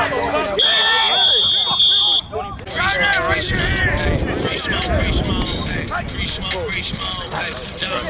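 Referee's whistle blown once, a steady high tone starting about half a second in and lasting about a second and a half, over shouting voices. From about a third of the way in, crackling noise joins the shouting.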